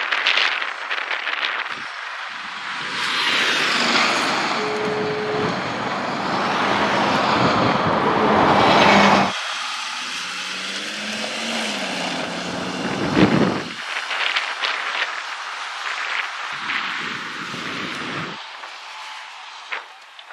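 Passing road traffic at speed: vehicles swell past and fade away, the sound cutting off abruptly about nine seconds in, then more vehicles passing with a peak around thirteen seconds.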